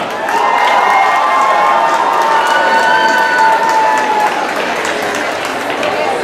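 Audience applauding with dense, steady clapping.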